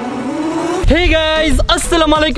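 A car engine revving up, its pitch rising steadily for just under a second, then giving way to a voice over music with a heavy bass beat.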